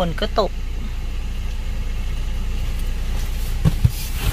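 Car engine idling, heard from inside the cabin as a steady low hum, with a couple of short low knocks near the end.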